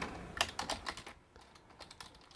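Computer keyboard being typed on: a quick run of keystrokes through the first second, then the clicking thins out and goes quiet for most of the second half.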